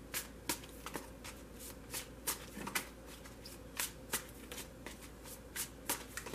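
A tarot deck being shuffled by hand: irregular, short, sharp card clicks, two or three a second.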